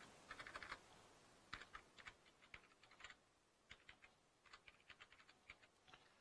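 Faint typing on a computer keyboard: several short runs of keystrokes with brief pauses between them.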